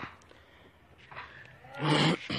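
A buck goat gives one short bleat near the end, loud against otherwise faint background.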